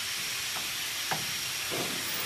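A steady hiss of background noise that runs unchanged throughout, with a few faint short sounds in it.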